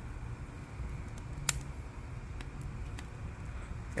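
Oak wood fire burning in a smoker's firebox, crackling with a few sharp pops, the loudest about one and a half seconds in, over a low steady rumble; the oak is a little damp.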